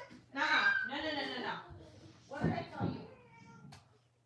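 A young child's wordless vocalizing: two drawn-out, whiny calls, the first about a second and a half long and the second shorter, about two seconds in.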